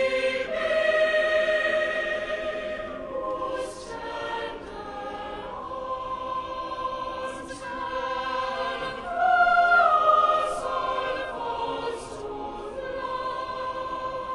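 A cathedral choir of mixed children's and adult voices singing in a large stone church. It sings long sustained phrases with brief sibilant consonants between them, swells to its loudest about nine to ten seconds in, and grows quieter near the end.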